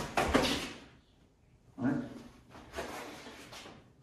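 A quick flurry of slaps and knocks as gloved hands meet and intercept a punch to the head, over in about half a second. A softer rustle of movement follows later.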